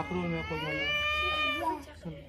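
A small child's long, drawn-out crying wail, rising in pitch and lasting about a second and a half before fading.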